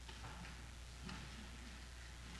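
Quiet room tone with a steady low hum and a few faint, scattered small clicks and knocks.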